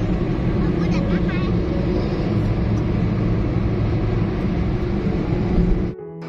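Steady low rumble of road and engine noise inside a car driving at speed on a highway.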